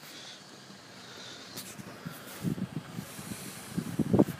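Wind buffeting the microphone: a faint steady hiss with a few short low gusts about two and a half seconds in.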